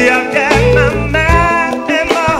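Live band playing: a male lead vocalist sings held, bending notes into a microphone over electric guitar, bass, keyboards and drums.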